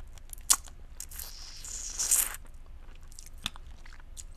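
Close-miked mouth sounds on a stick of yellow rock candy. There is one sharp crack about half a second in, then a longer noisy stretch of crunching and wet mouth sounds that peaks about two seconds in, and a smaller click near the end.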